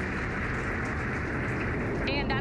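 Falcon 9 first stage's nine Merlin 1D engines firing during ascent, heard as a steady, dense rushing noise.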